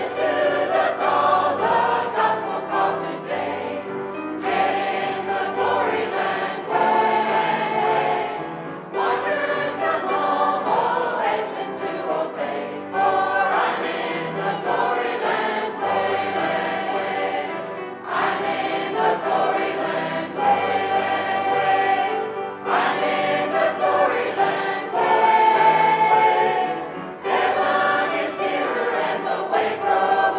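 Mixed choir of men and women singing a hymn in parts, in phrases of a few seconds with short breaks between them.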